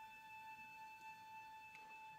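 A flute holding one long steady note, played softly.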